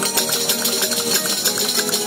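A folk cuadrilla playing in quick, steady rhythm: large frame drums with jingles (panderos) struck and shaken, jingling, over strummed guitars and a lute.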